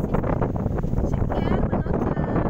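Wind buffeting the microphone as a steady low rumble, with a brief high-pitched voice about one and a half seconds in.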